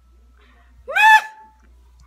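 A single short, high-pitched vocal squeal from a woman about a second in, rising in pitch and then held briefly.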